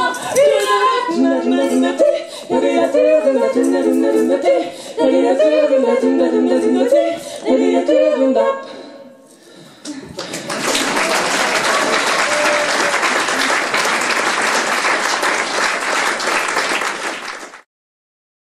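Female vocal trio singing a cappella, ending about nine seconds in; after a short pause, an audience applauds steadily until the sound cuts off suddenly just before the end.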